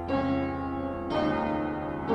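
Piano playing slow chords, a new chord struck about once a second and left to ring.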